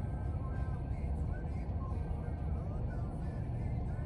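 Car engine idling with a steady low rumble, heard from inside the cabin, with faint music in the background.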